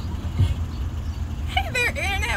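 Steady low outdoor rumble with a short low thump about half a second in; a woman's voice starts near the end.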